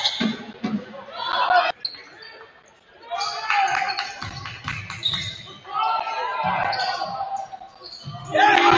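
Basketball bouncing on a hardwood gym floor during play, with voices echoing in the large hall. The sound drops off suddenly at an edit about two seconds in and comes back about a second later.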